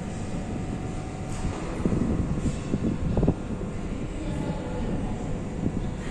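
81-717 metro train rumbling on the tracks, a steady low roar with louder knocks and surges around the middle.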